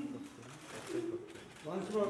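Faint, low murmured voices during a lull, with louder speech starting near the end.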